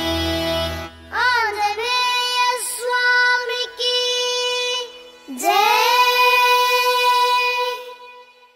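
A group of children singing a Hanuman (Maruti) bhajan together: a few ornamented phrases, then one long held note that stops near the end. The instrumental accompaniment with tabla drops out about a second in, leaving the voices almost alone.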